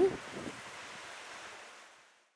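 Sea surf washing against a rocky shore, a soft steady hiss that fades away toward the end.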